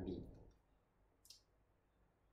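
Near silence in a pause of speech, with one short, sharp click about a second in.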